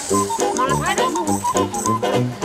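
Background music with a bouncing bass line, with voices over it.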